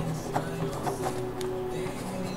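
Background music with long held notes, over the light scratching and clicking of a pen writing on paper.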